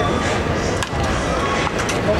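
Ballpark ambience during batting practice: a steady low rumble with distant voices, and two sharp knocks about a second apart.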